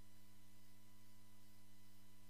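Steady low electrical hum with faint hiss from the chamber's microphone and sound system, unchanging throughout.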